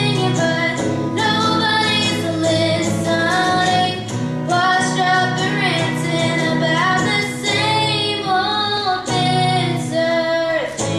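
A young girl singing a melody while accompanying herself on electric guitar.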